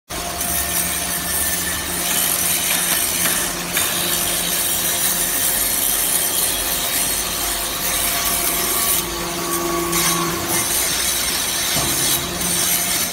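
Hydraulic briquetting machine for metal chips running: a steady hum from its hydraulic pump motor under a continuous scraping rattle of metal chips. A higher hum joins for a second or so about three-quarters of the way through.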